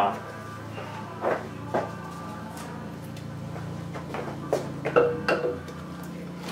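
A few sharp knocks and clunks as an aluminium L92 cylinder head is lifted and set down onto an LS V8 block, about a second in and again near the end, over steady background music.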